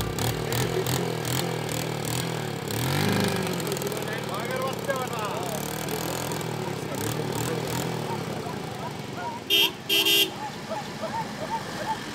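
Small step-through motorcycle engine running, with a brief rise in revs about three seconds in. Near the end a vehicle horn sounds two short toots in quick succession.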